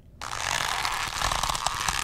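A steady crackling hiss that starts abruptly a fraction of a second in.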